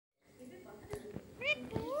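Caged green parakeet calling: short pitched squawks and rising calls in the second half, with two sharp clicks about a second in.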